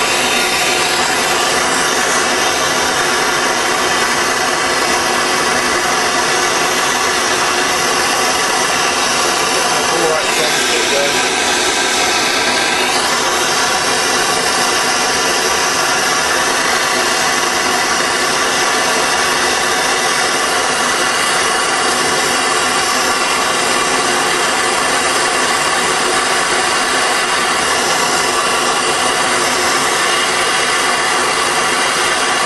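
Propane torch burning with a steady, loud hiss, melting silver for a casting. Its sound shifts briefly about ten seconds in, then settles back.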